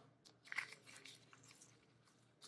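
Near silence with a few faint rustles and soft ticks of hands handling the practice sheet, the clearest about half a second in.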